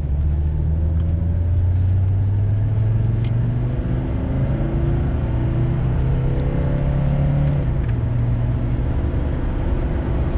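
Mercedes 300SD's OM617 five-cylinder turbodiesel heard from inside the cabin, pulling the car up through the gears. Its pitch climbs and drops back twice as the transmission shifts up. It runs smoothly, with no stumbles or misfires, on a spray of mostly water injected into the intake ahead of the turbo.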